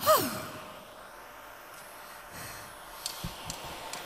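A woman's voiced sigh right at the start, falling steeply in pitch over about half a second, followed by quiet room tone with a few faint clicks.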